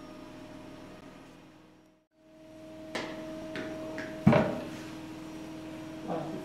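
Steady low hum broken by a brief dropout, then a few light clicks and one sharp knock about four seconds in.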